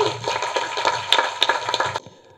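Audience applauding: many overlapping hand claps at once, cut off suddenly at the end.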